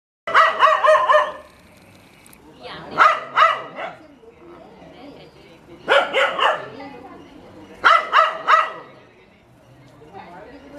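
A dog barking at a cobra in four volleys of two to five quick, sharp barks, a couple of seconds apart.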